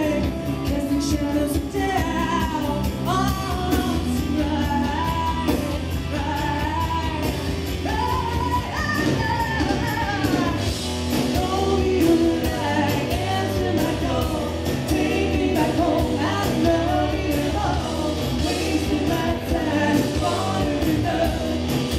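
Live rock band playing, with a woman singing the lead over electric guitars, bass guitar and drums.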